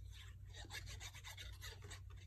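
Faint scratchy rubbing of a glue bottle's fine nozzle being drawn across a small piece of paper as liquid glue is spread along its edge.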